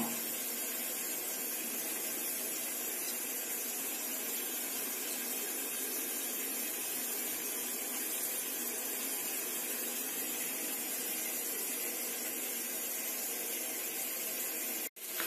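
A steady, even hiss with no separate events.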